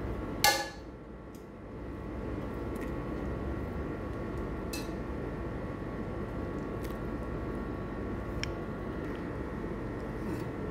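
Pan of tomato sauce simmering with a steady bubbling hiss, with a sharp metallic clink about half a second in and a few faint clicks as fried chicken pieces are put back into it.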